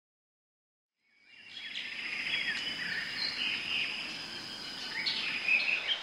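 Nature ambience fading in about a second in: several birds chirping and singing over a steady background hiss, with a constant high insect tone.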